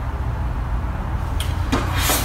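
Steady low room hum, with a brief rustle near the end.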